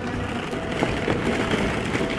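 Hollow plastic ball-pit balls jostling and rubbing against each other and against the camera: a dense rustling clatter made of many small clicks.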